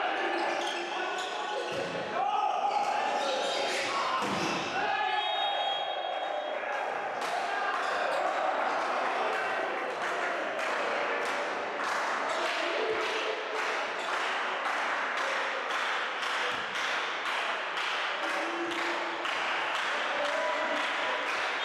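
Indoor volleyball match sounds in a reverberant sports hall: players shouting in the first few seconds, and a short high referee's whistle about five seconds in. After that, a steady run of sharp knocks or claps comes about twice a second.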